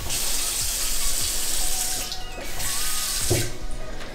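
Bathroom faucet running into a ceramic sink basin, with a short break about two seconds in, then shut off a little after three seconds in.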